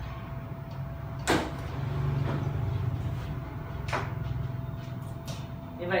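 Dishwasher top cover panel clicking free of its clips and sliding off the machine. There is a sharp click about a second in, a second click near four seconds, and a low sliding noise between them.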